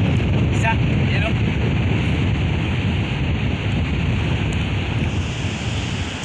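Steady wind blowing across the microphone over the wash of choppy shallow sea water.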